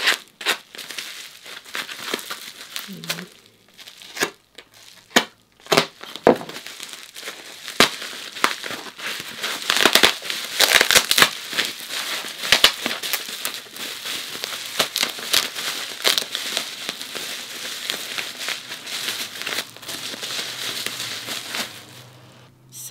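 Bubble wrap and brown paper tape being torn off and crumpled by hand, a continuous run of crinkling and sharp crackles, thickest around the middle.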